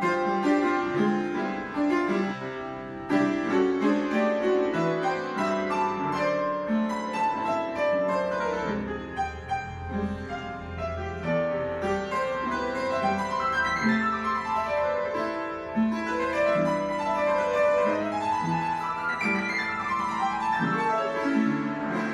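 Upright piano played live: a continuous passage of melody over chords, with low bass notes held around the middle.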